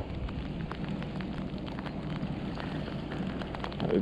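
Rain falling, with many small irregular taps of drops striking close to the microphone.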